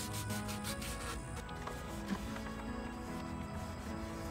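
Quiet background music over the scratchy rubbing of sandpaper worked by hand over a wooden dresser's curved trim.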